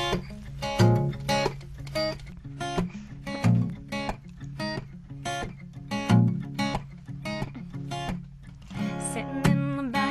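Solo acoustic guitar playing a song's introduction: a repeating pattern of picked chords, with a low bass note accented every two to three seconds.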